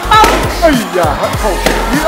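Glitter-filled balloons being burst with a pin, several sharp pops over background music and speech.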